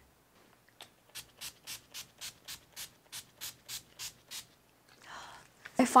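A run of about a dozen short rubbing strokes, about four a second for some three seconds, followed by an intake of breath near the end.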